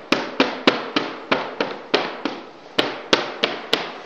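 A quick series of about a dozen sharp cracks or knocks over a few seconds, each followed by a short echo in a bare, empty room.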